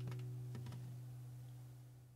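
An acoustic guitar's last chord ringing out and fading away, with three faint clicks over it near the start and about half a second in.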